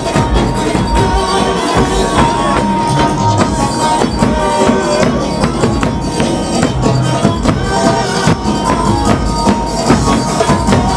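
Festive percussion music driven by large double-headed bass drums struck with sticks, in a dense, steady rhythm, with a long held note running through it.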